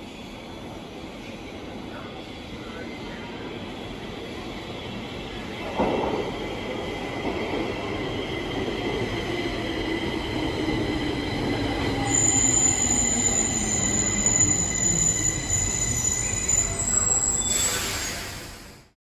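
Stockholm metro train arriving and braking to a stop in an underground station, growing louder as it comes in. A drive tone falls in pitch as it slows, a high squeal joins for the last few seconds, and there is a short burst of noise at the stop.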